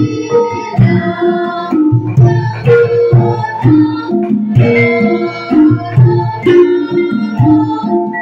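A gamelan ensemble playing: bronze bonang kettle gongs struck with padded sticks, together with saron metallophones, in a steady, even stream of struck notes that ring on into one another.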